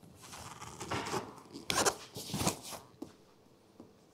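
Nylon tent fabric rustling and scraping in several swells while the hard-shell roof tent's lid is pushed down over it, for about three seconds.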